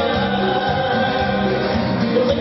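Live folk band playing through a PA: amplified guitar and keyboard with held singing voices.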